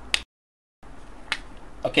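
Two short, sharp clicks, one just after the start and one about a second and a half later, over faint room hiss. The sound drops out to dead silence for about half a second between them.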